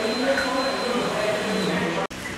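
Steady rushing background noise, like a fan or blower running, with indistinct voices beneath it and a faint high whine that fades near the end.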